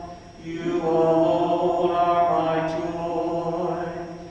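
A slow hymn or chant sung in long, held notes, phrase after phrase, with a brief breath pause just after the start and a steady low tone beneath.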